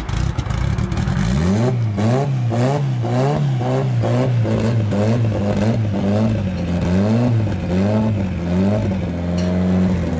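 Mitsubishi Lancer Evolution's engine revved up and down in quick, even blips, about two a second, then held at a steady speed near the end.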